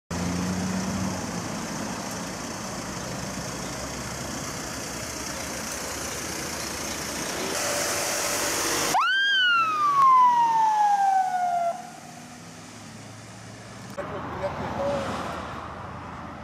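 Road and engine noise, then one ambulance siren whoop about nine seconds in. The siren rises sharply and then falls slowly away over about three seconds.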